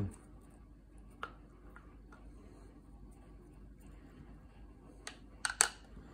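Quiet handling sounds: a few light taps and clicks as a wooden chopstick packs candied jalapeno slices into a glass jar through a plastic canning funnel, with a sharper cluster of clicks near the end.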